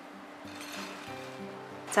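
Soft instrumental background music, a melody of held notes.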